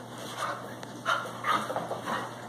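Two dogs play-fighting, giving about three short vocal sounds in quick succession.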